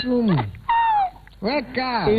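People laughing and exclaiming, with one high-pitched falling squeal about a second in.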